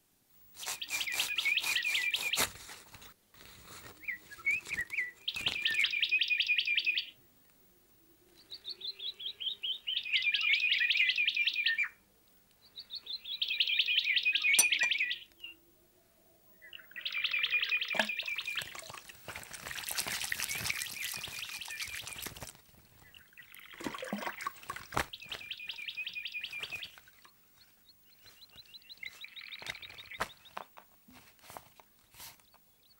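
A bird singing a series of rapid trilled phrases, each lasting one to two seconds, repeated with short pauses. There are a couple of sharp clicks about midway.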